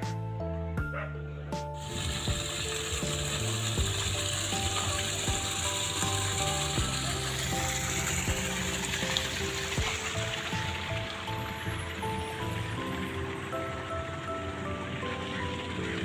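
Steady rain hiss that starts about two seconds in, under background music playing a slow melody of held notes.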